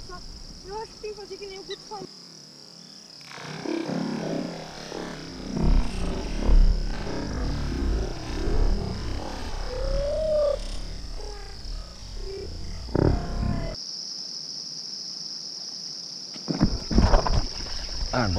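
Splashing in shallow water as a traíra strikes a surface lure, over a steady high chirring of insects.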